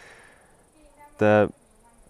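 Faint, steady, high-pitched insect chirring, typical of crickets or grasshoppers in grass. One short male vocal sound cuts in a little after a second.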